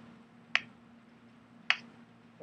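Two sharp taps of chalk striking a chalkboard, a little over a second apart, as the unit is written on the board.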